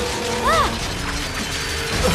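Cartoon sound effects of a swarm of Scraplets, small robotic creatures, eating at a robot's metal armour: dense mechanical clicking and clattering, with a short squeaky chirp about half a second in, over background music.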